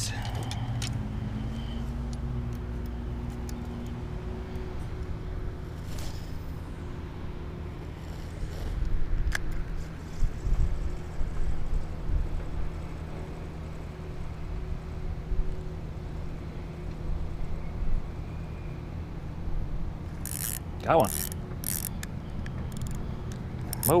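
Spinning reel being cranked to retrieve a spinnerbait, its gears whirring steadily, with a few louder knocks and clicks around ten seconds in.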